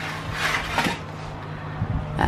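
A soft rubbing scrape about half a second in as a metal baking tray is handled and moved into the oven, over a low steady hum.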